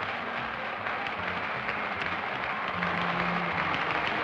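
Closing theme music of a live TV game show, held low notes, playing over steady studio audience applause.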